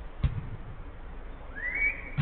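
A football thumps off a player's foot about a quarter second in, on an artificial-turf pitch. Near the end comes one short whistle that rises in pitch.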